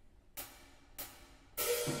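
A drummer counts the steel band in with two crisp hi-hat clicks about two-thirds of a second apart, each with a short ringing tail. About one and a half seconds in, the steel pans and drum kit come in on the next beat and grow louder.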